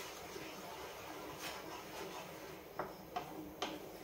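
A spatula stirring a thick sauce in a frying pan, faintly, then three light clicks against the pan about 0.4 s apart in the last second and a half.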